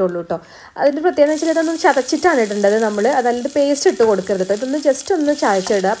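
Chopped ginger, garlic, green chili and curry leaves dropped into hot oil with mustard seeds and urad dal, sizzling from about a second in. A woman talks over it the whole time.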